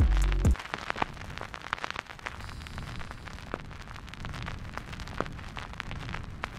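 Outro logo sound effect: a deep bass boom that falls in pitch during the first half second, then a crackling, static-like hiss with scattered clicks.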